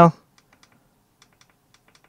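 A few faint, scattered light clicks from hands handling the digital microscope, following the tail end of a spoken word.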